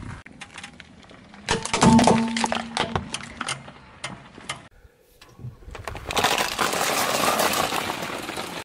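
Brittle plastic toys cracking and snapping under a car tyre: a cluster of sharp cracks about two seconds in, then a denser crunching crackle over the last two seconds as the car rolls over more objects.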